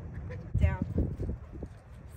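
A dog's paws thudding on dry grass as it runs in close, several quick thuds, with a short high-pitched vocal call that falls in pitch as the thudding begins.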